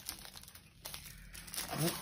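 Crinkling and rustling as a rolled poster is worked out of a cardboard poster mailing tube, with a sharper scrape about a second in.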